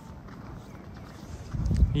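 Footsteps crunching on packed snow as the person holding the camera walks, with heavier low thuds in the last half second.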